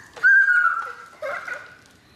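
A toddler's high-pitched excited squeals: one held cry, then a shorter "ho!" about a second later.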